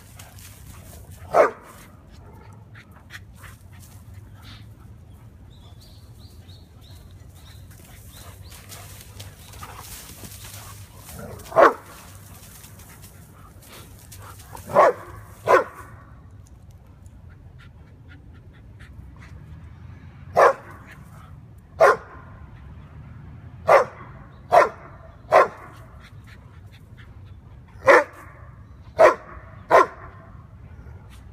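A dog barking in single sharp barks, about a dozen in all: a few spread out over the first two-thirds, then one every second or so through the last ten seconds.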